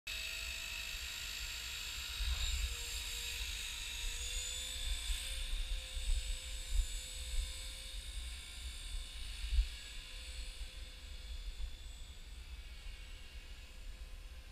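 E-flite Blade 300 CFX electric RC helicopter in flight: a steady high whine from its brushless motor and rotors. The pitch steps up slightly about four seconds in, and the whine grows fainter in the last few seconds. Wind buffets the microphone with low thumps.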